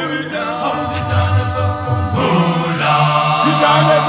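South African isicathamiya-style male a cappella choir singing in close harmony, deep bass voices holding low notes beneath the higher parts, the chord changing about halfway through.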